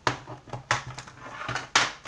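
Hands rummaging through drawing supplies, looking for a pencil: a few sharp rustles and clatters, the loudest near the end.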